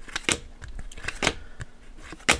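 A stack of hockey trading cards being flipped through by hand, each card slid off the stack with a light snap, in an irregular run of quick clicks.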